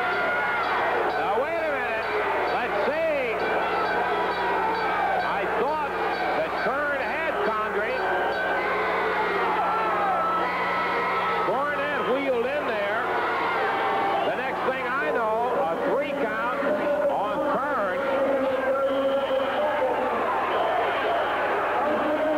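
Arena crowd at a pro wrestling match yelling and screaming in many overlapping voices, reacting to a pinfall, over a steady low hum from the old videotape.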